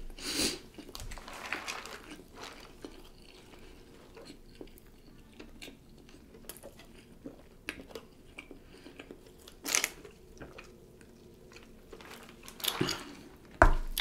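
Close-miked chewing and crunching of food, with small wet mouth clicks between a few louder short crunches: about half a second in, near ten seconds and near the end.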